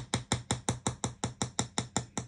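A rapid, evenly spaced series of sharp clicks, about five or six a second, each with a dull low thump under it.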